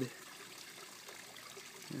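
Faint steady background hiss with no distinct event in it.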